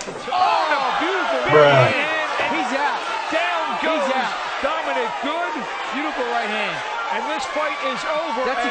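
Ringside crowd shouting and yelling over a boxing knockout, many voices overlapping, loudest about a second and a half in.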